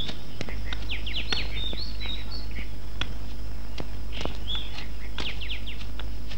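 Wild birds calling in forest: quick runs of high, falling chirps and short whistled notes, twice in bursts of four or five, over a steady low hum.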